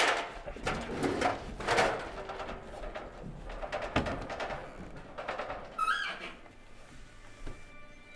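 A series of dull thuds and knocks as two people heave at something heavy, with a short rising squeak about six seconds in. Film score music comes in near the end.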